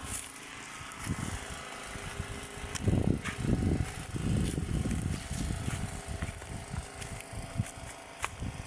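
Low rumbling gusts, loudest from about three to six seconds in, over a faint steady hum like a distant motor, with a few light clicks.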